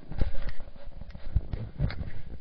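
A few dull low thumps with small knocks between them, about four in two seconds.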